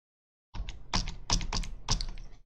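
Computer keyboard typing: a quick run of about six sharp keystrokes, starting about half a second in.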